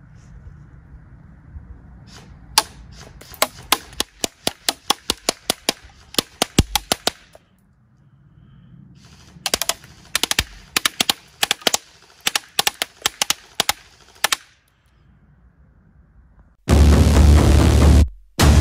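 Ares Amoeba AM-014 airsoft electric rifle firing single shots in two quick strings of about four sharp cracks a second, with a pause between them. Near the end loud electronic music cuts in suddenly.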